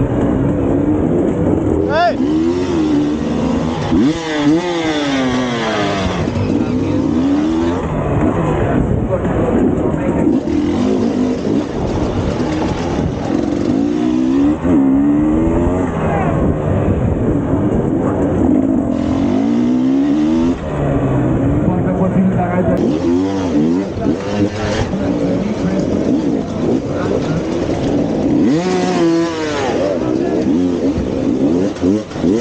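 Enduro dirt bike engine heard close from the rider's position, revving up and down over and over as the throttle is worked.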